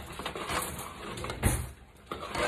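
A spoon stirring and scraping through thick boiling peanut brittle syrup and peanuts in a metal saucepan, with a dull thump about one and a half seconds in.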